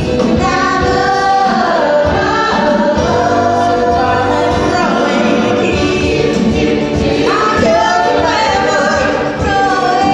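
Live stage-musical singing with a pit band accompanying: sung voices carrying the melody over steady instrumental backing.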